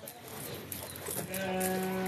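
A young calf mooing: one long, steady, level call that starts just over a second in.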